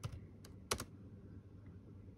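A few keystrokes on an ASUS laptop keyboard typing into a search box, all within the first second, then none.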